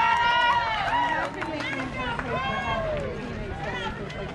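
Several voices shouting and calling out over one another, loud at first, then falling away about a second in to scattered calls.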